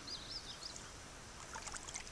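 Faint trickling and splashing of river water around a wading angler holding a striped bass in the shallows, with a few faint high chirps near the start and small scattered ticks later.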